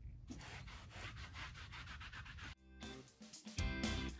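A hard rubber curry comb is rubbed in repeated strokes over a horse's coat, a faint scrubbing sound. About two and a half seconds in it stops and background music begins.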